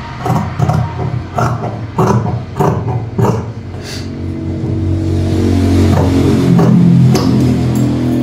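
Large tailor's shears snipping through cotton blouse fabric, about two to three short cuts a second, over the first half. In the second half a steady low droning hum swells, loudest near the end.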